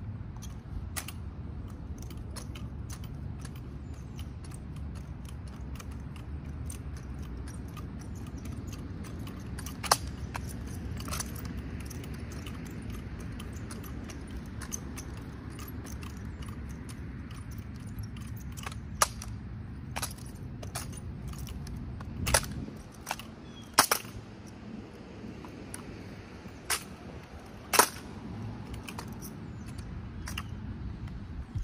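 Drill rifles being spun, caught and slapped by hand: a string of sharp clicks and slaps with some rattle, over a steady low rumble. The loudest smacks come once about a third of the way in and in a cluster through the last third.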